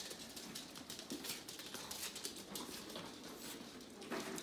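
Faint, irregular light ticking and tapping of footfalls on a hardwood floor.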